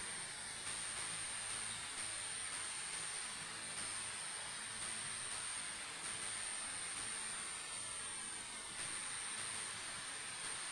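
Faint steady hiss of background room noise, with a thin, constant high-pitched whine above it.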